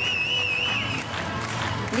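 Referee's pea whistle blown in one long trilling blast that stops about a second in, over crowd noise from the stands, signalling play to restart.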